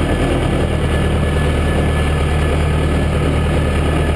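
Massey Ferguson 590 tractor's four-cylinder diesel engine running at a steady, even pace while the tractor drives along, heard from inside the cab.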